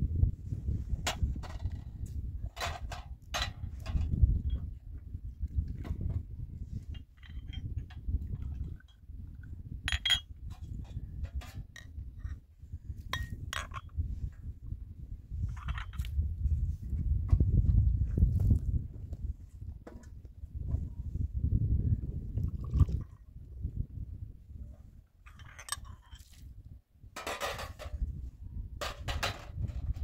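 Small glass tea glasses and a metal tray clinking and knocking now and then as they are handled, under a low, uneven rumble.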